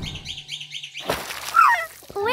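Cartoon birdsong: a quick run of short high chirps. About a second in comes a brief thump, then a short falling cry that is the loudest sound.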